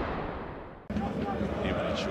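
The fading tail of a deep boom from a broadcast intro sound effect, which dies away and is cut off abruptly about halfway through by stadium crowd noise with indistinct voices.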